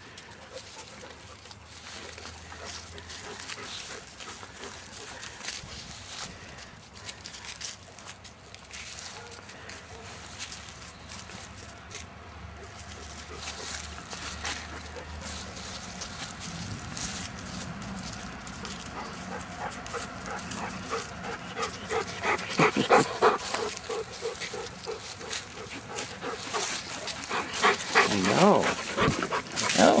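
Dogs vocalizing in short bouts of pitched calls during the last third, over a low, steady outdoor background.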